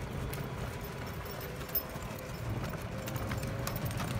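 A horse trotting, its hoofbeats clip-clopping on dirt, over the low steady running noise of the vehicle carrying the microphone.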